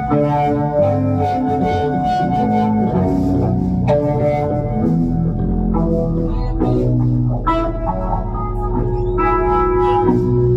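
Electric guitar played through an amplifier and effects, letting held notes ring and changing them every second or so in a loose, unhurried passage.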